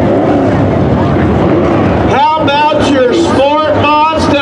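Dirt-track sport modified race car engines running, their pitch rising and falling as the cars circle the oval. A man's voice talks over them from about halfway.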